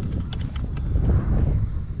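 Wind buffeting the camera microphone: a loud, uneven low rumble that swells in the middle.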